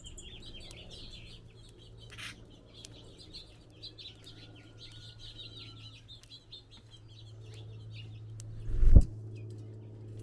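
House finches twittering in rapid high chirps over a steady low hum. About nine seconds in there is a single loud low thump.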